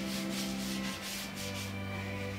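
Broom sweeping in quick, even strokes, about four a second, that stop shortly before the end, over a held note of background music.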